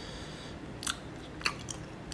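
Eating at close range: wooden chopsticks clicking against a plastic food container, two sharp clicks about half a second apart followed by a few lighter ticks.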